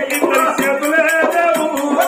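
Oggu Katha folk singing: a voice sings a wavering melodic line over a quick, steady beat of a small hand drum and jingling percussion.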